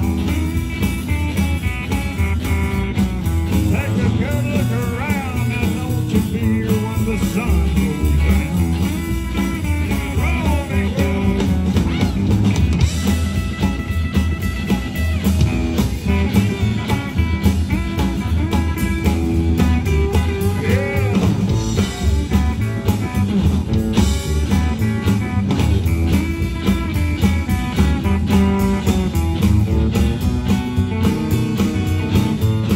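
A live rockabilly band playing an instrumental passage: electric guitars over bass and drums at a steady, loud level, with bent lead-guitar notes several times.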